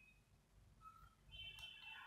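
Near silence: room tone, with a faint, brief high-pitched sound in the second half.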